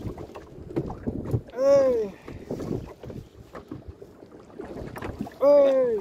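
Two drawn-out wordless cries from a person, each rising then falling in pitch, about two seconds in and again near the end, over scattered clicks and knocks.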